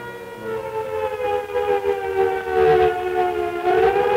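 Air-raid siren wailing, its pitch sinking slowly and then starting to rise again near the end.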